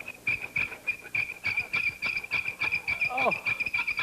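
Shell auger boring into a hardwood recorder blank on a lathe, squealing as wood rubs dry on metal: a high squeak pulsing about three times a second. It squeaks because there is no beeswax in the bore to lubricate it.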